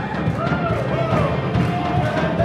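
Live worship band music with a voice singing over drums and accompaniment.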